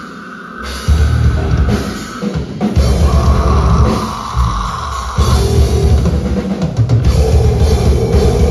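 Metal band playing live: heavy drums with kick and cymbals, distorted guitars and bass in stop-start hits. The band drops out at the very start and slams back in just under a second later, breaks again briefly around two and a half seconds, then plays on steadily.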